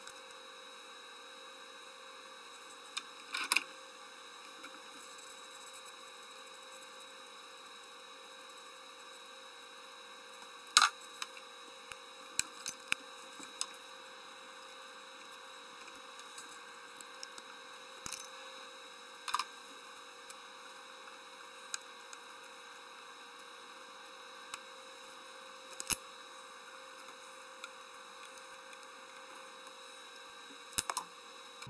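Scattered short clicks and knocks of metal and plastic engine parts being handled and fitted by hand in an engine bay, over a steady faint hum and hiss. The sharpest knocks come about a third of the way in and near the end.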